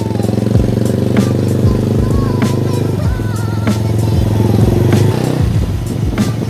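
Motorcycle engine of a tricycle running steadily as it rides along the street, easing off near the end, mixed with background music with a steady beat.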